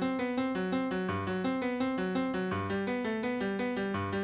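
Software General MIDI acoustic grand piano playing a prelude from a MIDI file: an even, steady stream of single notes in repeating broken-chord figures, with lower notes sounding at regular intervals.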